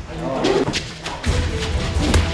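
Fight-scene sound effects: a thud of a blow and a voice shout, over background music whose deep bass line comes in after about a second.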